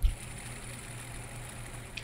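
The rotor of a Phoibos Eagle Ray's Miyota automatic movement spinning freely, heard as a steady whir from the watch after a sharp click at the start. The noisy rotor is a known trait of Miyota automatics and the reviewer counts it as the watch's one real negative.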